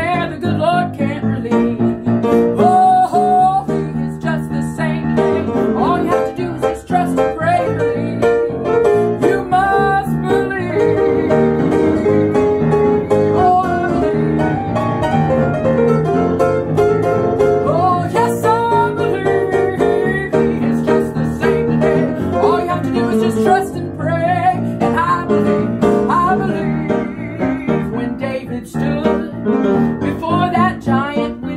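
Piano playing an instrumental break of a country-gospel song, with other instruments carrying a melody line over it.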